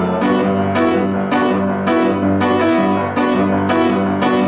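Solo piano playing: chords struck about twice a second and left to ring, with no voice over them.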